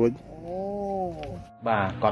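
An elderly woman's voice drawn out into one long wavering cry of about a second, its pitch rising and then falling, between stretches of her talking. Another woman's voice starts speaking near the end.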